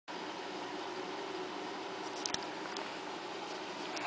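Steady low hum and hiss of room tone, with two faint clicks a little past halfway.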